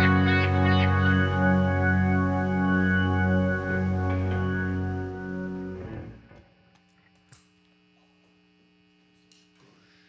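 The final chord of a live rock song, with distorted electric guitar and bass held and ringing out. It dies away about six seconds in, leaving only a faint amplifier hum.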